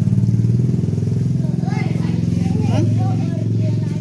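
An engine running steadily at idle close by, with faint voices in the background.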